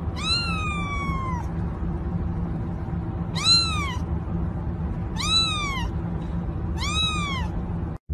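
Orange-and-white kitten meowing four times: a long falling meow, then three shorter ones that rise and fall, over a steady low hum.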